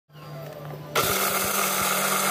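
Electric blender motor running, grinding red chilies into a thick peanut-sauce paste; a softer hum at first, then much louder and steady from about a second in.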